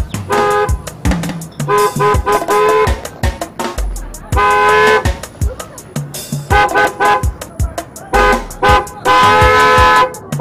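A car horn honking again and again at a pedestrian walking in the road ahead, in bursts of short beeps alternating with longer held blasts. The last blast runs on past the end. A drum-beat music track plays underneath.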